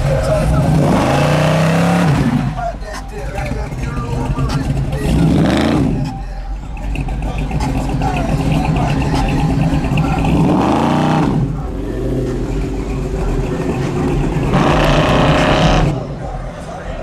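Chevrolet Monte Carlo's big-block V8 engine being revved repeatedly as the car pulls away, with four rising revs spaced a few seconds apart.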